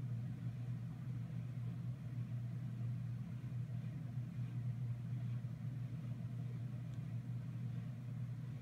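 A steady low hum, like a motor or engine running at a constant idle.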